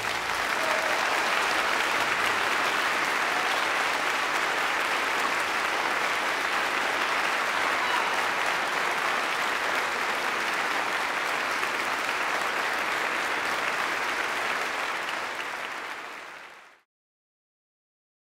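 Audience applauding steadily after an orchestral performance; the applause fades away near the end and stops.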